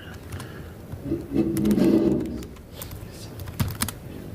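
A man's low, wordless hum or murmur lasting just over a second in the middle, followed near the end by a few sharp clicks of laptop keys as a command is entered in a terminal.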